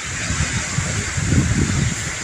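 Strong gusting wind battering the phone's microphone with a low, uneven rumble that grows heavier in the second half, over the rush of wind through tree branches.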